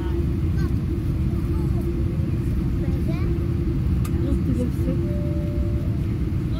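Steady low rumble of an airliner inside the cabin as it rolls along the ground, its engines and wheels making an even drone with a constant hum, under faint passenger voices.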